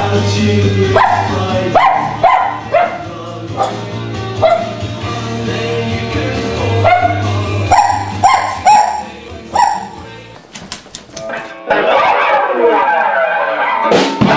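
A dog barking repeatedly in short yips over music with a steady low drone. The music grows fuller near the end.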